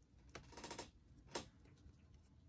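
Faint rustle of paper pieces being handled and slid on a cutting mat, lasting about half a second, then a single sharp click just over a second in.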